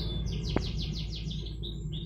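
A small bird chirping: a quick run of short, high, descending chirps, about ten in a second, then a few single notes. A single light click comes about half a second in.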